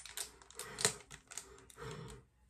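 A small package of pimple patches being pulled and torn at by hand, giving several sharp clicks and crackles of plastic and cardboard spread over the two seconds.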